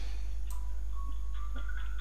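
A steady low hum, with a single sharp click about half a second in and a few faint, short high tones later on.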